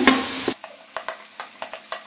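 Onions and tomatoes frying in oil in an aluminium karahi, sizzling while a slotted metal spatula stirs and scrapes against the pan. The sizzle drops away sharply about half a second in, leaving scattered clicks of the spatula on the metal.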